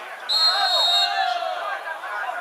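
Referee's whistle blown once, a single steady high blast of under a second, about a quarter second in, over players shouting on the pitch.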